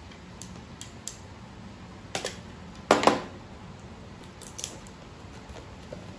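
A utility knife and a cardboard phone box being handled as the box's seal is cut: a few short, scattered clicks and scrapes, with one louder crunch about three seconds in.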